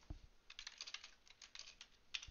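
Faint typing on a computer keyboard: a quick run of keystrokes entering a git command.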